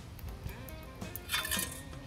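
A long-handled perforated metal shovel scraping and clinking against the coals and steel of a smoker's firebox, a short clatter about a second and a half in. Soft background music plays underneath.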